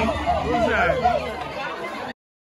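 Several voices talking over one another in a room, chattering and fading toward the end.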